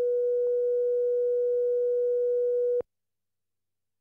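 A heart monitor's flatline: one steady electronic beep held for almost three seconds, then cut off suddenly.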